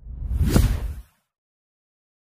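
Whoosh sound effect with a deep boom under it for an animated logo. It swells to a peak about half a second in and stops abruptly about a second in.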